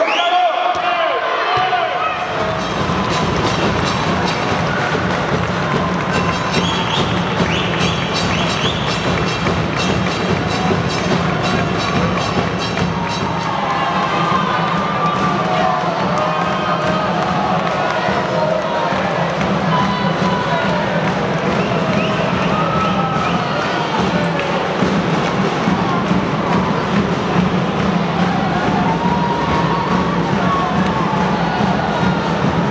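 A crowd of children and adults cheering and shouting together, with music playing underneath, in a large echoing indoor hall.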